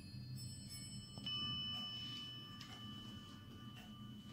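A longcase clock's chime struck once about a second in, its bell note ringing on and slowly fading, with faint ticking after it.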